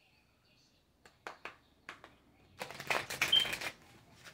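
A deck of oracle cards being shuffled: a few light clicks of cards, then a dense rush of shuffling lasting about a second near the end.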